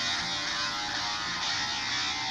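An electro dance track playing through the Nokia X3-02 phone's small built-in loudspeaker. It sounds thin and tinny, with little bass.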